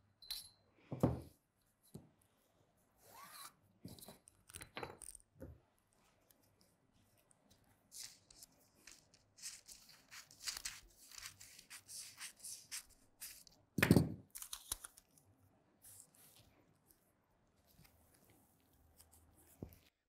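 Scissors snipping through paper pattern in a run of short cuts, cutting open a bodice pattern to move the shoulder dart, with paper rustling. A few soft knocks on the table, the loudest a dull thud near the middle.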